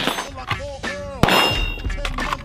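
Two sharp rifle shots, one at the start and one about a second and a quarter in, with a metallic clang ringing on after the second, typical of a steel target being hit.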